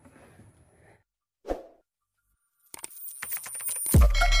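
Video intro sound effects: a short single hit about a second and a half in, then a fast run of clicks from a little before the end, rising in loudness and leading into electronic intro music.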